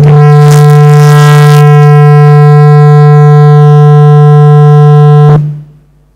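Loud, steady feedback howl from the hall's PA: one low tone with many overtones, cut off suddenly about five seconds in. It comes from two microphones on the stage table that do not get along.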